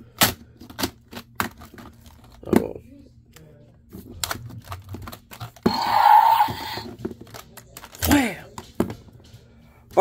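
Hard plastic dinosaur action figures clacking and knocking together as they are fought, with a loud electronic roar from the Battle Chompin Carnotaurus toy's speaker about six seconds in, as its wound lights glow, and a shorter falling growl a little past eight seconds.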